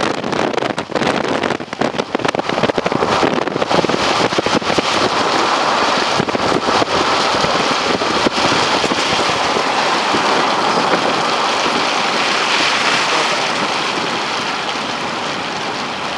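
Rain and wind noise with tyres on a wet road, heard from a moving vehicle. It starts as gusty, crackling buffeting for the first few seconds, then settles into a steady rushing hiss.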